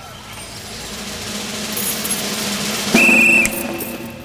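Street traffic noise swelling gradually, with a short, loud high tone, like a whistle or horn blast, about three seconds in that lasts under half a second.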